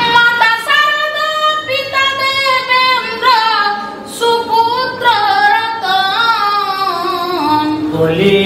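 A woman singing unaccompanied, a Bengali Patua scroll song (pater gaan), in long held notes that waver and glide between pitches.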